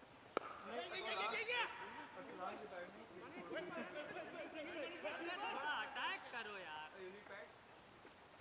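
A cricket bat strikes the ball once with a sharp crack, followed by several seconds of players' voices shouting and calling across the field.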